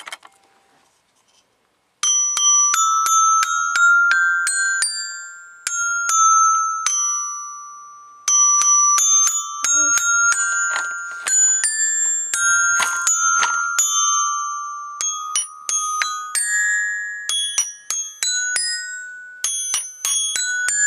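Toy glockenspiel with metal bars struck irregularly by a small child with a long mallet: random single notes and quick clusters that ring and fade, starting about two seconds in.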